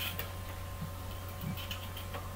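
Craft-knife blade shaving wood off a graphite pencil in long strokes: a few light, short scraping ticks over a steady low hum.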